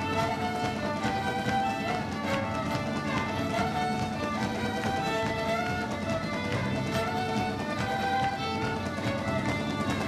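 A live Celtic rock band plays an instrumental passage with no singing. A fiddle carries a quick melody over bodhrán and acoustic guitar.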